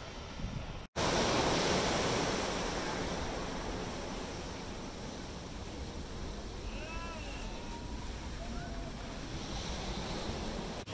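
Ocean surf, a dense steady rush of breaking waves, loudest just after a brief dropout about a second in. A few short high-pitched calls rise and fall around seven seconds in.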